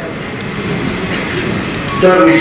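Audience applauding and cheering, a steady, even noise.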